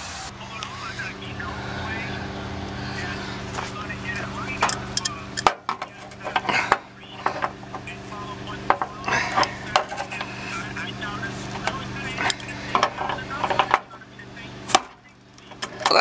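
Sharp metal clicks and knocks from an adjustable wrench working the cap of a refrigerant service valve on an outdoor AC condensing unit, over a steady low hum that drops out about five seconds in and stops again near the end.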